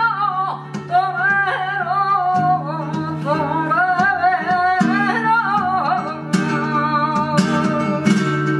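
Flamenco bulerías: a woman sings a wavering, ornamented line over flamenco guitar chords, with sharp percussive accents from about six seconds in.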